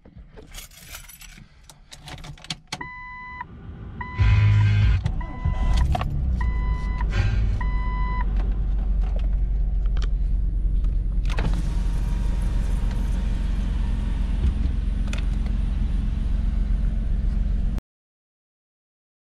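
Keys jingling, then a Jeep's engine is started about four seconds in while its warning chime beeps several times; the engine then idles steadily. A steady rushing noise joins the idle about eleven seconds in.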